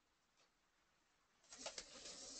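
Near silence, with a short faint noise and a couple of soft clicks near the end.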